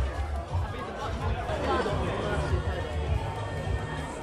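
Several people chattering at once, with background music and its bass running underneath.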